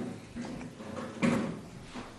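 Movement noises of a student getting up from a school desk and heading to the blackboard, with one short louder noise a little over a second in.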